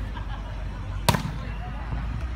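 A volleyball struck hard by a player's hand about a second in: a single sharp slap.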